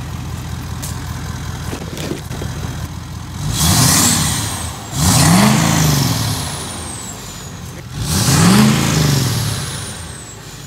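Ford 6.7 L Power Stroke V8 turbodiesel in a 2020 F-250, heard at the exhaust tips: it idles, then is revved three times with short throttle blips, each rising and falling in pitch. A high turbo whistle spools up with the revs and slowly falls away afterwards.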